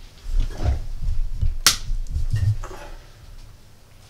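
Low thumps and bumps of someone moving about, with one sharp click a little under two seconds in: a room light switch being turned off.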